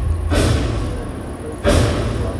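Two heavy booming hits about a second and a half apart over a steady low rumble, played through outdoor loudspeakers as the soundtrack of a light-projection show.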